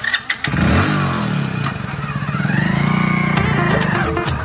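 Hero commuter motorcycle's small single-cylinder engine revving as the bike pulls away with two riders aboard, its pitch falling and then climbing again.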